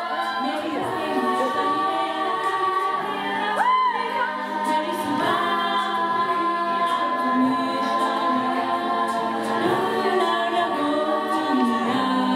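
Women's a cappella group singing in close harmony without instruments: a held low note under several moving upper voices, with a quick swooping figure about four seconds in. The arrangement is a medley of Hindi film songs.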